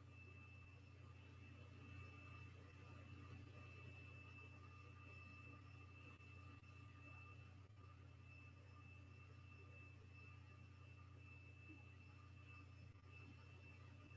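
Near silence: a faint steady low hum with a thin, steady high tone above it.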